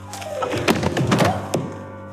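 A rapid flurry of knocks and clatter from about half a second to a second and a half in, over soft background music with held tones.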